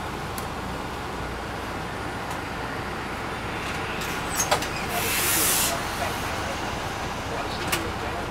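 Steady low drone of an MCI D4000 coach's Detroit Diesel Series 60 engine, heard from inside the bus. About four and a half seconds in come two sharp clicks, then a loud burst of air hiss from the bus's pneumatic system lasting under a second. Another click comes near the end.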